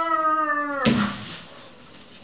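A long, drawn-out high cry that stops just under a second in, cut off by a sharp clattering crash as a wire-mesh basket drops onto a cloth-covered table.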